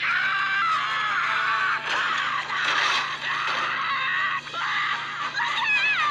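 A cartoon character's voice screaming at length over background music.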